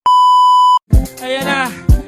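A loud, steady, high-pitched test-tone beep, the tone that goes with TV colour bars, lasting under a second and cutting off suddenly. About a second in, music with singing and a beat starts.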